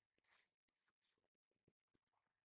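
Near silence, with three faint, brief hissy rustles in the first half.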